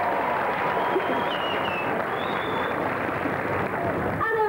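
Concert audience applauding and cheering, with a high whistle from the crowd around the middle.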